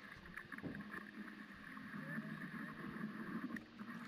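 Faint rush of surf water and wind buffeting an action camera held at water level among breaking waves.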